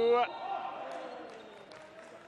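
Basketball arena ambience under TV commentary. A commentator's drawn-out word ends just after the start, then a few short ball bounces on the hardwood court come in the second half as a free throw is set up.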